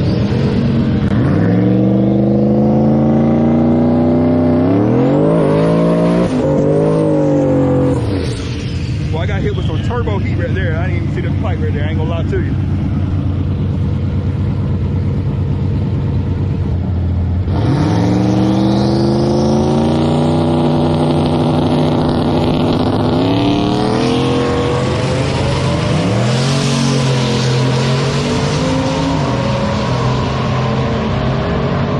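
Ford Mustang's engine revving hard through a drag-strip burnout, with the rear tyres spinning. Its pitch climbs steeply in repeated runs, drops away about eight seconds in, and climbs again after about seventeen seconds.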